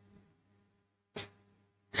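Near silence with a faint, steady low electrical hum, broken by one short click about a second in.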